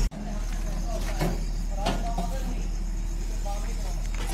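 Indistinct voices of people talking at a distance over a steady low hum, with a couple of light knocks about a second in.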